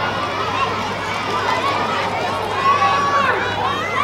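Several players and onlookers shouting and calling out across the field during a flag football play, voices overlapping, loudest a little past the middle.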